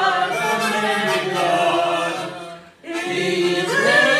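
Voices singing a hymn together, without words the recogniser could make out. There is a short break for breath about three quarters of the way through before the next line begins.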